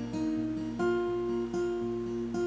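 Acoustic guitar with a capo, chords struck about every three-quarters of a second and left to ring.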